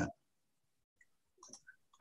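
The end of a spoken word, then near silence on a video call, broken by a few faint, very short clicks about a second in and again near the end.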